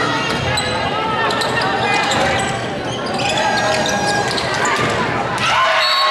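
Volleyball being bounced and hit in a gymnasium, with sharp thuds and short sneaker squeaks on the hardwood court, under the voices of players and spectators.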